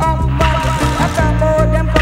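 Reggae riddim playing: a deep, steady bass line under evenly spaced drum hits and sustained instrument tones.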